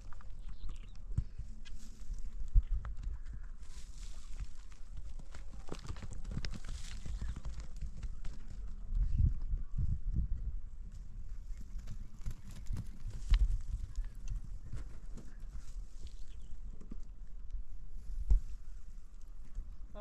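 Long-handled shovel and hoe chopping and scraping into dry, stony earth, with irregular knocks and scrapes and a few louder strikes. A steady low rumble runs underneath.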